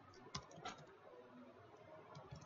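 A few faint keystrokes on a computer keyboard, with two clearer clicks in the first second.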